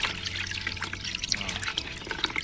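Liquid trickling and dribbling into a basin of pesticide mix, a quick patter of small drips and splashes.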